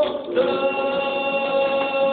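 Live singing to an acoustic guitar: a long held sung note beginning about half a second in.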